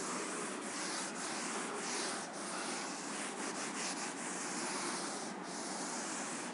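A duster wiping chalk off a chalkboard in steady back-and-forth strokes, making a continuous rubbing sound.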